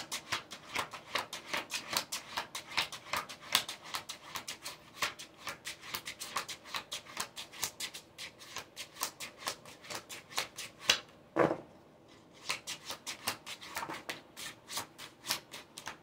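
A deck of tarot cards being shuffled by hand: a rapid run of light papery card slaps, about five a second, with a brief pause about three quarters of the way through.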